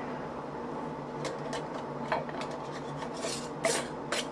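Metal screw band of a Ball canning jar clinking and scraping against the glass jar as it is set on the rim and turned: a few light clicks, then a longer scrape near the end.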